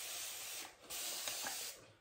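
Hiss of water as the face is wetted for lathering, in two stretches of about a second each with a short break between them.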